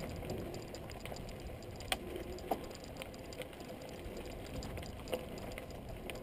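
Mountain bike rolling over a dirt singletrack, heard from a camera mounted on the bike: a steady rumble and rattle from the tyres and frame, with a few sharp knocks as it jolts over bumps.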